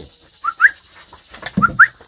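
A bird chirping: two quick calls about a second apart, each a short low note followed by a higher, sharply rising one.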